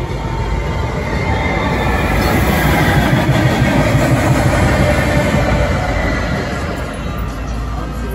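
Metrolink Arrow passenger train passing close by on the tracks. It grows louder to a peak about four seconds in, then fades as it moves away.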